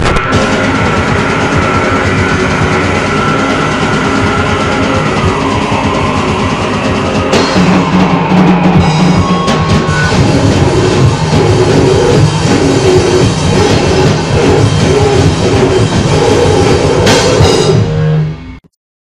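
Loud grindcore song played by a full band with drum kit. It starts abruptly and keeps on at a steady high level.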